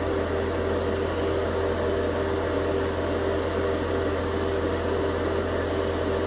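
An airbrush spraying chrome metal paint in many short hissing bursts as its trigger is pressed and released, misting the paint on lightly at about 15 PSI. Under it, a spray booth's exhaust fan runs steadily on low with a constant hum.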